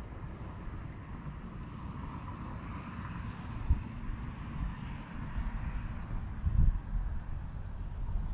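Wind buffeting an outdoor camera microphone, a low uneven rumble with stronger gusts about four seconds in and again near six and a half seconds.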